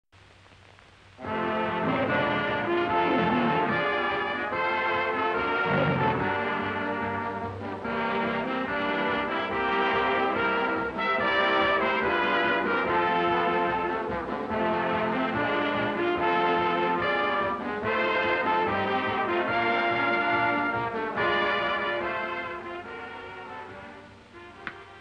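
Orchestral opening-title music with brass, starting about a second in and fading out near the end.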